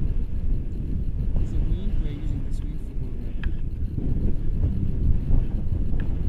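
Wind buffeting the camera's microphone in paraglider flight: a steady, loud low rumble.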